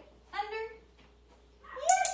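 Comfort Retriever puppy whimpering: two short, high whines, one about half a second in and a louder, rising one near the end.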